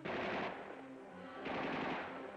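Two bursts of rifle fire, one at the start and one about a second and a half later, each trailing off, over background music with held notes.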